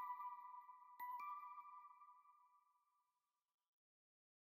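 Closing notes of a trap beat's synth melody: steady, clear tones, with fresh notes struck about a second in, ringing out and fading to silence about three seconds in.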